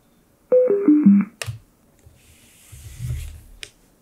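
ROBOT RB580 soundbar sounding its power-off tone as its power button is held: four short beeps stepping down in pitch, followed by a click. About two seconds in comes a soft rushing noise with a low rumble, ending in a second click.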